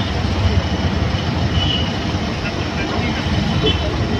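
Auto-rickshaw engine running with a steady low rumble, heard from inside the open cab with city traffic noise around it.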